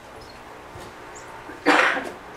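A single short cough near the end of a quiet stretch of room hum.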